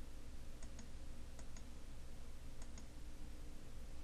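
Computer mouse clicking three times, each a quick pair of faint ticks from button press and release, over a steady low electrical hum and hiss.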